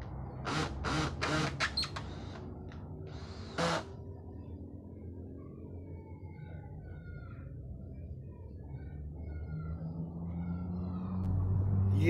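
Cordless drill run in short trigger bursts on a wooden door frame: several quick bursts in the first two seconds and one more about three and a half seconds in, then a low steady hum.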